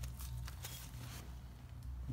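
Faint rustling and a few light clicks of a rag wiping the inside of an electronic throttle body's bore, over a low steady hum.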